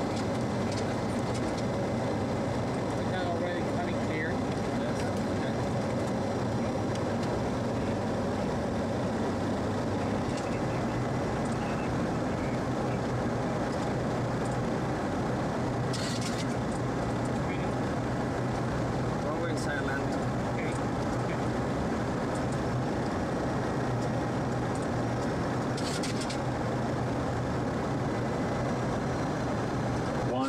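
Steady flight-deck noise of a Boeing 737-300 on final approach: airflow and engine drone with a constant low hum. Two short bursts of hiss, one about halfway through and one near the end, with faint voices at times.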